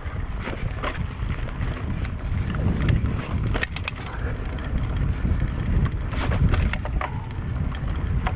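Mountain bike ridden along a bumpy dirt singletrack, with wind buffeting the microphone, a constant low rumble, and many irregular rattles and clicks from the bike over the rough ground.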